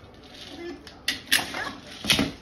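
A dog's hard plastic treat-dispenser ball knocked about on a wooden floor by the dog's nose: two sharp clacks about a second in, a quarter-second apart, with a softer rattle after them.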